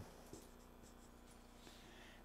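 Faint strokes of a marker writing on a whiteboard, over near silence.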